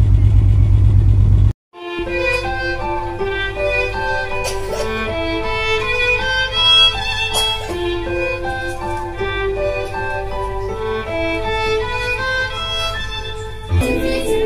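A loud low rumble for about a second and a half, which cuts off suddenly. Then a solo violin plays a melody of held, stepping notes over a recorded accompaniment with a steady bass line, through loudspeakers in a room.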